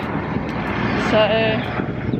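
Low, steady rumble of a passing road vehicle, under a single spoken word.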